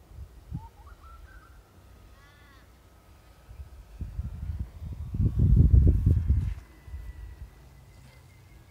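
A bird calling, with a single crow-like caw about two seconds in after a couple of shorter, rising notes. From about four seconds in, a loud low rumble of noise on the microphone lasts a couple of seconds.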